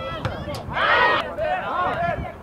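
Voices shouting outdoors during a soccer match, with one loud, drawn-out yell about a second in and a sharp knock just before it.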